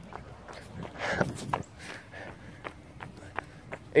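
A runner's footsteps on pavement, quick light thuds at about three a second.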